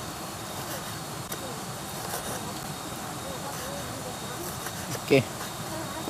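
A knife slicing grilled sinalau bakas (pork) on a wooden cutting board, with a few faint taps against the board. It sits under a steady background hiss with faint distant voices and insects.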